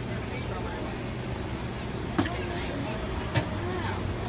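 Steady low machine hum with faint voices behind it, broken by two sharp clicks about two and three and a half seconds in.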